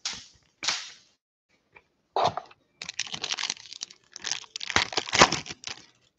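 Foil wrapper of a trading-card pack crinkling and tearing open, with the rustle of cards being handled. A few short crackles come first, then near-continuous crinkling from about three seconds in.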